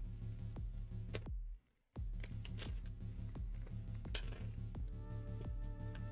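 Quiet background music under light clicks and clinks of small metal M3 parts being picked through by hand on a workbench. The music cuts out for a moment about a second and a half in.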